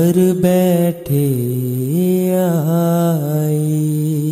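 Devotional shabad music: a voice holds a long sung note without clear words, sliding down and back up in pitch partway through, between lines of the hymn.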